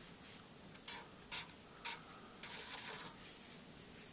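Felt-tip marker drawing on paper: a few short strokes about half a second to a second apart, then a longer, rapidly repeating scratchy stroke a little past the middle.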